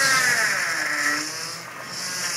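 Jeep engine revving unevenly as the Jeep crawls over the rocks, the revs rising and falling, then easing off and quieter in the second half.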